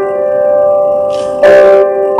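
Grand piano played slowly: a held chord rings and fades, then a new chord is struck about a second and a half in and rings on.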